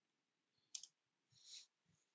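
Near silence, with two faint computer keyboard key clicks about a second apart.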